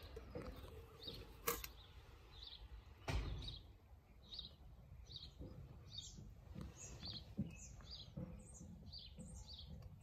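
Faint small-bird chirps: short, high, falling notes repeating about twice a second, joined by a sharp click about a second and a half in and a dull thump at about three seconds.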